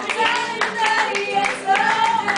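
Hands clapping in rhythm along with an acoustic guitar song, while voices hold long sung notes.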